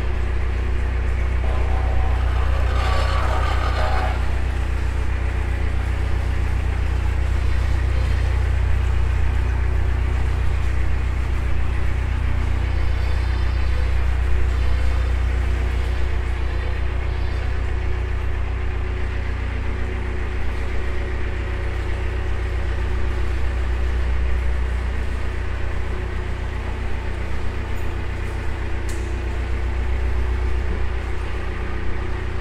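Narrowboat's diesel engine running steadily at low revs inside a brick canal tunnel, a continuous low hum. A brief rush of noise about two to four seconds in.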